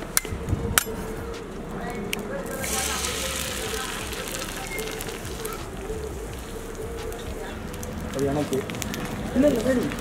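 A few sharp taps as an egg is cracked over an oiled iron griddle, then the egg sizzling in the hot oil from about two and a half seconds in, a steady frying hiss over the wood fire of a rocket stove.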